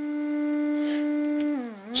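A signal generator's test tone played through a 1950 Magnatone Varsity M197-3-V tube amplifier and its speaker. The tone holds one steady pitch, then glides down about one and a half seconds in and fades briefly. It is coming through the amp's second input, which seems lower in gain.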